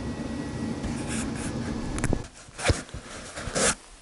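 Steady workshop hum that drops away about two seconds in, followed by a few light knocks and a brief scraping rustle.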